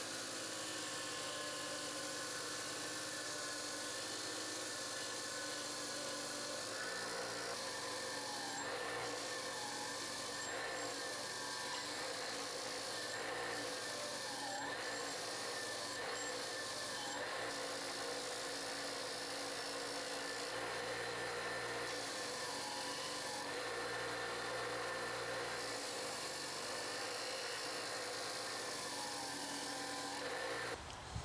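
Electric bench grinder running a wire wheel that brushes rust and paint off a steel Pulaski axe head. Its steady hum dips in pitch again and again through the middle stretch as the head is worked against the wheel.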